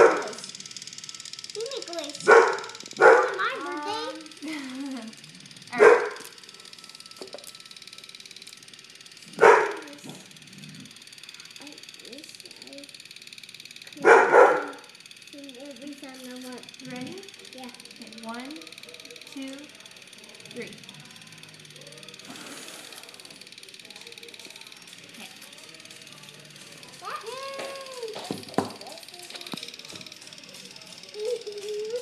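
A dog barking in single short, loud barks, six over about fifteen seconds, with soft voices between them.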